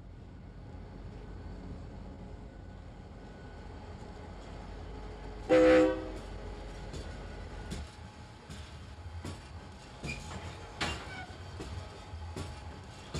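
A low rumble swells, then a short, loud horn blast comes about halfway through. Irregular sharp knocks and clanks follow.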